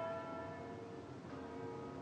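Church bell ringing: a strike at the start that rings on and fades, then a second, softer strike about a second and a half in.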